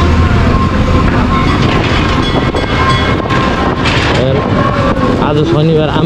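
A motorcycle riding over a rough, muddy road, heard from the handlebar: its engine running under a steady low rumble of road and wind noise. A man's voice comes in near the end.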